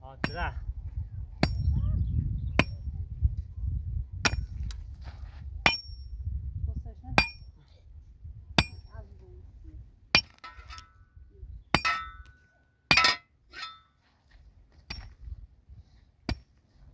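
Repeated sharp strikes on stony ground, about one every second or so, each with a short metallic ring, as soil is pounded down around a newly planted tree.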